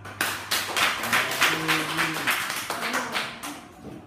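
A room of people clapping hands in applause, starting just after the beginning and thinning out near the end.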